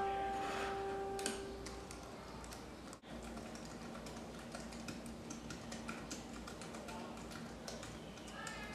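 Piano notes dying away, then faint, irregular clicking of typing on a computer keyboard.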